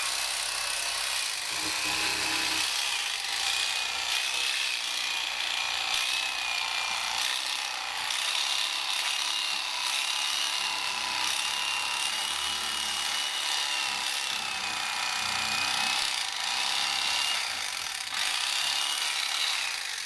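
Electric fillet knife running steadily as it cuts a fillet from a sucker, a continuous buzz with a high motor whine that wavers slightly in pitch.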